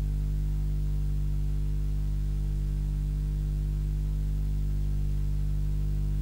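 A steady low hum with evenly spaced overtones, unchanging in pitch and level.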